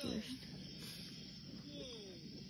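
Quiet, steady hiss of background noise, after a short spoken "uh" at the start, with faint voice-like sounds near the end.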